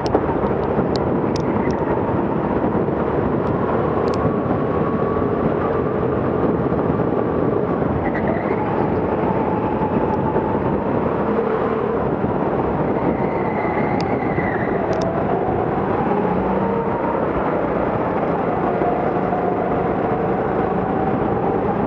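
Go-kart running on a track, heard from onboard: a loud, steady rush of motor and wind noise, with the motor's pitch slowly rising and falling as the kart speeds up and slows for corners.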